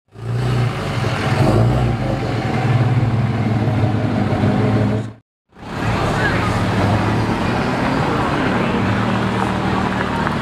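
Audi R8's V10 engine running at low revs as the car rolls slowly along, a steady low engine note broken by a half-second dropout about halfway through.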